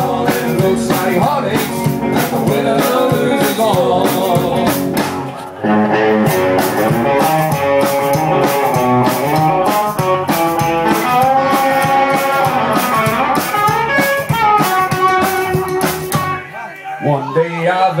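Live band playing an instrumental break with a steady beat: electric guitar lead over upright double bass and drum kit.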